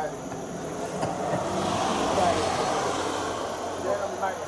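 A motor vehicle passing by, its noise swelling to a peak about two seconds in and then fading.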